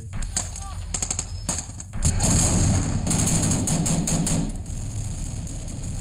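Gunfire in a combat-footage soundtrack: a few sharp separate shots about a second in, then dense rapid automatic fire from about two seconds that eases toward the end.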